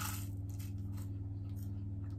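A crisp home-made Yorkshire pudding crunching as it is bitten into and chewed: a few faint crunchy clicks, the clearest right at the bite, over a steady low electrical hum.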